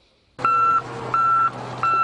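Reversing alarm on heavy snow-clearing equipment beeping three times, about one beep every 0.7 s, over a steady engine hum.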